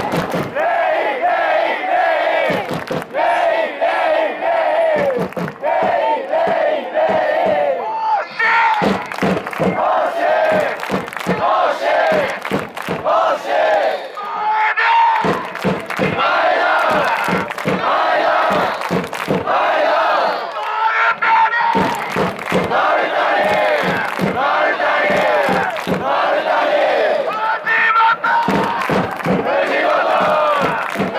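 A football supporters' section singing a chant together, with rhythmic clapping.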